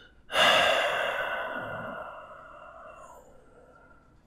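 A man breathes out in one long sigh, loud at the start and fading away over about three seconds.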